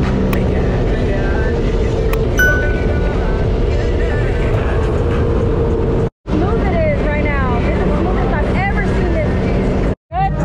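Sea-Doo personal watercraft engine and jet pump running steadily under way, with water and wind noise. The sound cuts out briefly about six seconds in.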